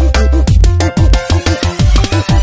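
Electronic backing music with a heavy, regular bass beat, sharp clicks on top and bass notes that fall in pitch.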